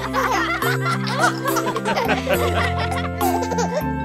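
Cartoon children and a baby giggling and laughing together over cheerful children's background music.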